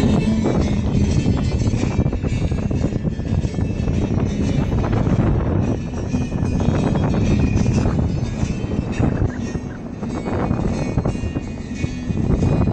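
Wind rushing and buffeting over the microphone with the low rumble of road noise from a moving car, its side window open, and music playing underneath.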